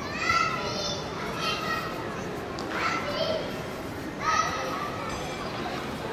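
Children's voices calling out in high-pitched shouts, several short calls spread across a few seconds over steady background noise.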